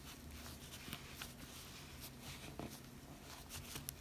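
Faint handling sounds of a replacement ear pad being pressed by hand into a Bose noise-cancelling headphone ear cup, with a few soft clicks as its ridge clips in along the edge, over a low steady hum.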